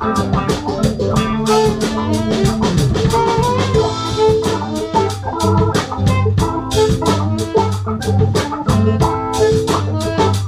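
Live funk band jamming: drum kit keeping a steady groove under a sustained organ-style keyboard, electric guitar and bass notes.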